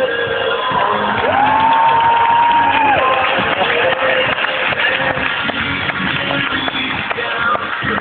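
Loud live music with guitar and voices, heard in a large hall over crowd cheering. About a second in, a voice holds one long high note for nearly two seconds, sliding up into it and dropping off at the end.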